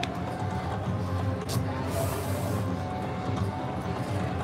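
Shadow of the Panther slot machine playing its free-games music and electronic tones while winning paylines are shown one by one, over a steady low casino hum.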